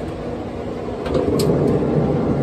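Steady low rushing noise from the running, preheated RecTeq RT-700 pellet grill, getting louder about a second in as its lid is lifted, with a couple of faint clicks.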